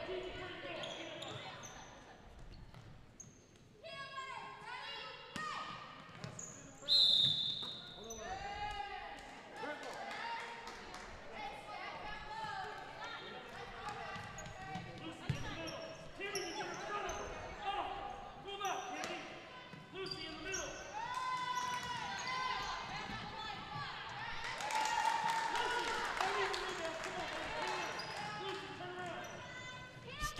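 Basketball game sounds in an echoing gym: the ball dribbling on the hardwood floor under players' and spectators' voices, with one short, loud whistle blast about seven seconds in.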